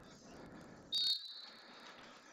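Referee's whistle blown once about a second in, signalling a foul: a short, loud, high-pitched blast that trails off into a fainter held tone, heard at a distance.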